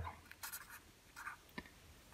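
Faint scratches and brushes of a hand and pen moving over a sheet of paper, a few short touches.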